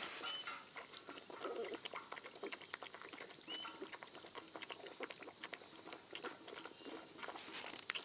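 Two puppies lapping milk from a steel plate: a steady run of small, irregular wet clicks from their tongues.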